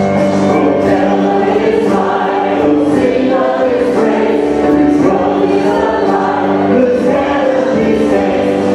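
Church choir and worship team singing a hymn together, in long held notes.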